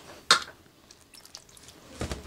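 Hand mixing and rubbing dry flour in a steel bowl: one sharp knock about a third of a second in, then a few faint soft ticks and rustles.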